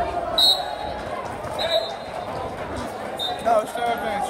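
Three short, high squeaks of wrestling shoes on the mat, over the chatter of spectators in a gym.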